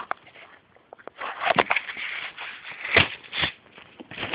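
Handling noise from a piston and connecting rod assembly being picked up and moved: rustling with a few light clicks and knocks of metal parts. It is quiet for the first second, and the sharpest knock comes about three seconds in.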